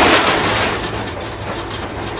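Rattling and knocking of a pickup's open rear bed and frame as it jolts over a rough dirt road, mixed with wind noise. It is loudest in the first second, then eases off.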